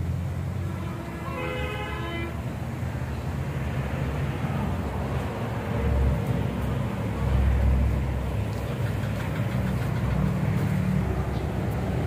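Low rumble of vehicle engines going past, swelling twice around the middle, with a vehicle horn sounding once for about a second about a second in.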